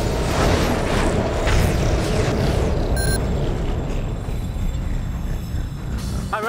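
Television ident stinger: music with heavy booming rumble and sweeping whooshes, and a brief electronic chime about three seconds in.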